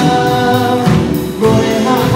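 A worship praise team singing together with a live band, several voices holding long sustained notes of a 'hallelujah' chorus, with the pitch changing about a second in.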